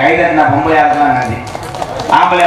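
A man speaking loudly into a stage microphone, his voice amplified over loudspeakers, easing off in the second half.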